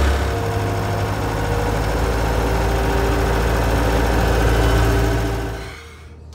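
Skid steer engine running steadily, fading out near the end.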